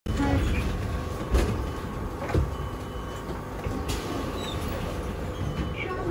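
Bus exit door with a Nanjing Kangni door mechanism opening and closing: a sharp clunk about a second and a half in, a second clunk a second later and a softer one near four seconds. Underneath is the steady hum of the stopped electric bus.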